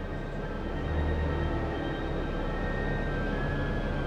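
Bus engine running, heard from inside the passenger cabin as a steady low rumble with a faint high whine over it; the low rumble swells briefly about a second in.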